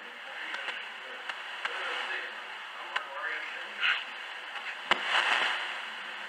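Thin, hissy sound from a church sound system, with faint, indistinct voices and a few small clicks. A sharp knock comes just before five seconds in.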